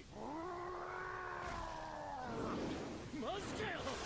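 A long, drawn-out animal-like screeching cry from the anime's soundtrack, held at a steady pitch for about two and a half seconds. Short sliding voice sounds follow near the end.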